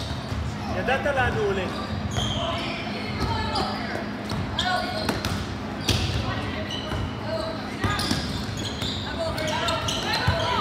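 Indoor youth basketball game: a basketball bouncing on a plastic sport-tile court, with sharp knocks scattered through and players and spectators calling out indistinctly.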